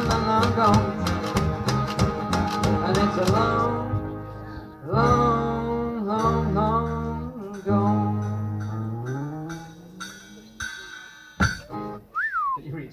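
A skiffle group with acoustic guitars, washboard and bass plays out the end of a song with no singing. The full rhythm stops after a few seconds, then a few separate chords ring out. The last chord is held while a bass note slides upward and fades away, and a single sharp knock comes near the end.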